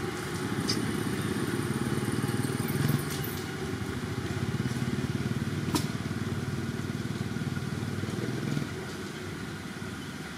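A small engine running steadily, louder for most of the stretch and dropping off near the end, with a single sharp click a little past halfway.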